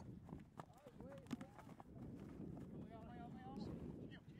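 Faint, distant shouts from soccer players on the field, heard over low wind rumble on the microphone, with a few short knocks.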